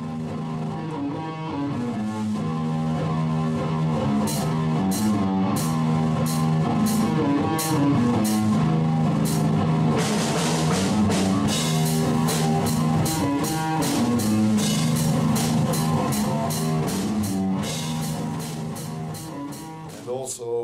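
Instrumental rock band playing live: a repeating guitar riff over a drum kit. Cymbal strokes come in about four seconds in and quicken after about ten seconds; the music cuts off at the end.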